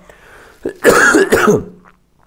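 A man coughing: one short, loud cough about a second in, lasting under a second.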